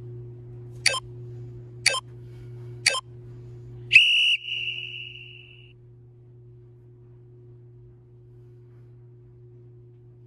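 Workout interval timer counting down: three short beeps about a second apart, then a longer final beep that rings out, signalling the start of the next timed interval. A low steady hum underneath drops away at the final beep.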